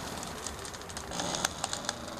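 Quiet background ambience with scattered light clicks and ticks, and a brief high-pitched chirping noise a little over a second in.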